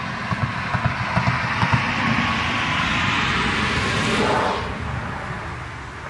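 A vehicle passing by, its noise building for about four seconds and then fading away.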